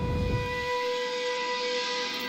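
Trailer score and sound design: a held high chord sustained steadily over a hissing wash, with a low rumble that fades out within the first second.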